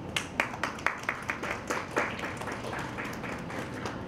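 A small audience applauding: distinct, irregular hand claps, strongest in the first couple of seconds and thinning out towards the end.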